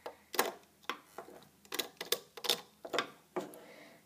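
Rubber bands and a metal hook clicking and snapping against a plastic rainbow loom as the bands are worked off the pegs, a handful of irregular sharp clicks.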